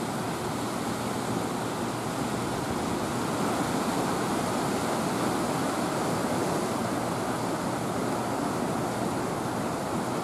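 Water rushing steadily out from under a dam's open floodgates and churning in the pool below, a constant rushing noise.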